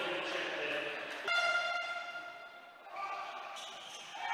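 A horn sounds one steady blast about a second in, lasting about a second and a half and fading, with a quieter horn-like tone starting near the end.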